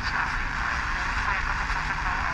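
Sony Ericsson mobile phone's FM radio tuned to 100.7 MHz, heard through its small speaker: a steady static hiss of weak reception, with faint broadcast speech under it.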